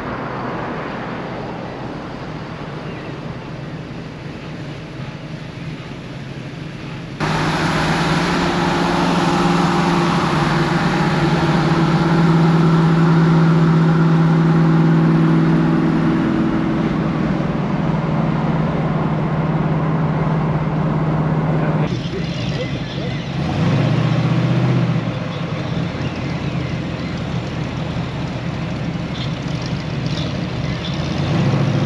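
Classic Ford Mustang V8 engines on the road. The first few seconds are mostly road and wind noise. After about seven seconds there is a sudden change to a loud, steady V8 drone at cruise. About two thirds of the way through it changes again, and there is a brief rise in engine revs a little later.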